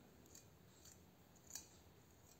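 Near silence: faint light scratches and ticks of a small tool against a plastic bottle, one a little louder about one and a half seconds in.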